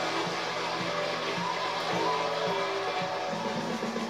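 Live backing band playing the intro to a Korean trot song, brass section with a steady beat, heard through a TV's speaker.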